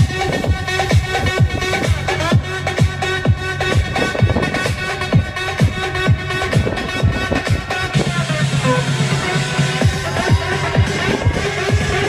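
Electronic dance music with a steady kick drum at about two beats a second; a held bass note comes in about eight seconds in.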